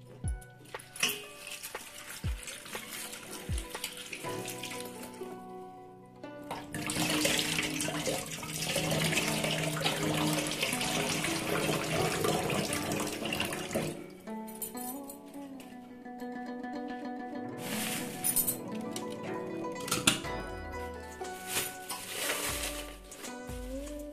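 Kitchen tap running into a stainless-steel sink for about seven seconds in the middle, with another short run later, over background music.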